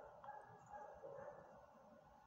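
Near silence with faint dog barking in the background.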